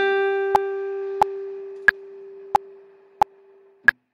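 Acoustic guitar holding a single long note that slowly fades, the last note of a melody phrase. Sharp metronome clicks keep time about one and a half per second in groups of three, every third one brighter. Everything cuts off suddenly near the end.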